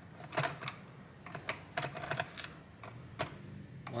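Irregular light clicks and taps of a Phillips screwdriver and fingers on a laptop's plastic bottom cover as the first screws are worked on.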